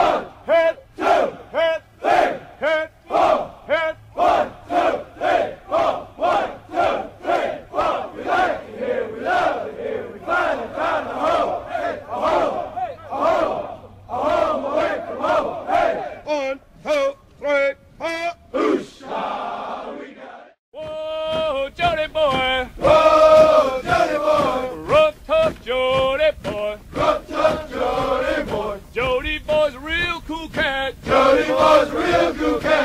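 A group of male voices chanting a military cadence in unison, at a steady rhythm of about two syllables a second. The chanting breaks off for a moment about twenty seconds in, then another cadence begins with longer, more sung lines.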